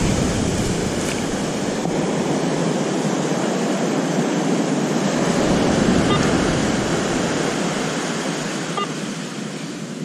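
Surf washing up a sandy beach: a steady rush of breaking waves and foaming swash that swells about halfway through and eases toward the end.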